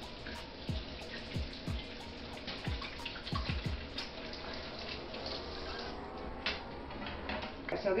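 Kitchen sink faucet running as hands are washed under the stream, a soft, steady splash of water, with quiet background music.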